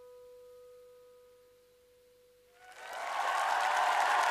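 The last piano note of a song rings out and slowly dies away, fading almost to silence. A little over halfway through, audience applause starts and swells quickly.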